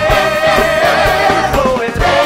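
Rock musical recording: an ensemble of voices holds sustained notes over a band with a steady drum beat. The held notes step down in pitch about a second and a half in.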